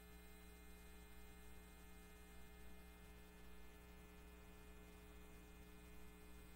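Near silence: a steady low electrical hum in the recording, unchanging throughout.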